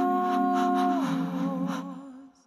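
Layered a cappella vocal loop: several overdubbed wordless voices hold a sustained chord, built up with a loop pedal. About a second in the top voice steps down to a lower note and wavers with a light vibrato, and the layers fade out near the end.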